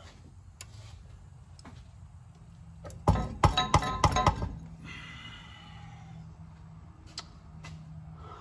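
A burst of metallic clanks and rattles about three seconds in, with a brief metallic ring, between a few scattered light clicks. A faint steady hum runs underneath.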